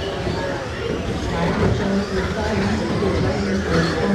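Indistinct voices of people talking in a large room, over the running of radio-controlled model trucks racing on the track.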